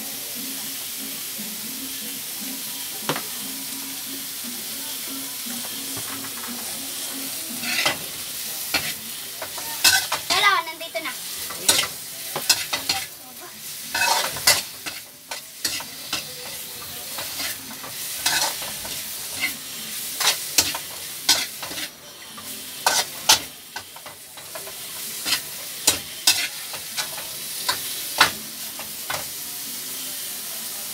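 Chopped cabbage sizzling as it is stir-fried in a pan, with a metal spatula scraping and clacking against the pan in quick, irregular strokes from about eight seconds in.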